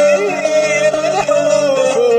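Kabyle song: a singer holds one long note with a wavering ornament. It is backed by plucked-string accompaniment from a sampled qanun and acoustic guitar.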